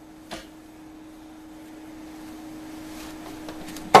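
Quiet room tone: a steady hum with one faint click shortly after the start and a faint hiss slowly growing louder.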